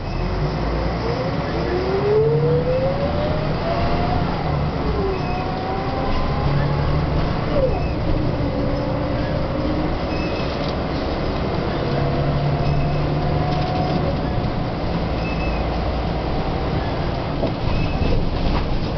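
Volvo B10M bus heard from inside while under way: its underfloor six-cylinder diesel runs loudly with a whine that rises in pitch as the bus accelerates, drops back about five seconds in, rises again and then holds fairly steady.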